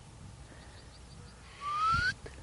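A short, clear whistle rising in pitch, lasting about half a second near the end, over a quiet outdoor background with a few faint high chirps.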